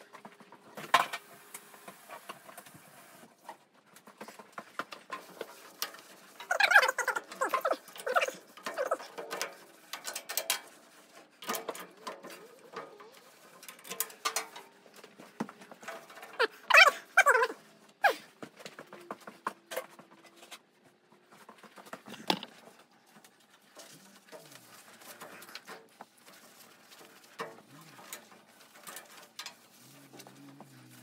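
A cloth rag rubbed and wiped over a painted steel panel, with scattered light knocks and clicks of handling. Two louder stretches of rubbing, each about a second and a half, come about seven and seventeen seconds in.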